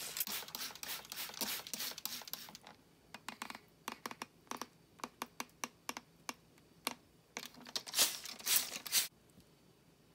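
Hand-held trigger spray bottle misting a vivarium: a quick run of squirts at first, then scattered short squirts and clicks, and two stronger squirts shortly before it stops about a second before the end.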